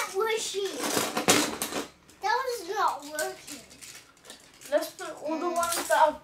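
Children's voices talking and exclaiming, with a brief rattle of Beyblade spinning tops clattering on a plastic tub lid about a second in.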